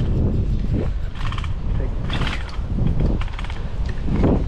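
Wind rushing over the microphone of a moving bicycle, with three short bursts of rapid ticking or rattling about one, two and three seconds in.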